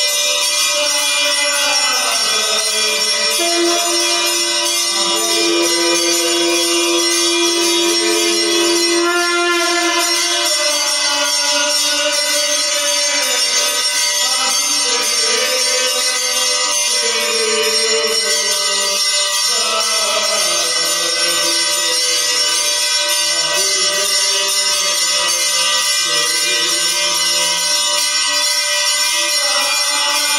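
Hindu devotional music with steady jingling percussion throughout. A long held note comes in a few seconds in and lasts about seven seconds.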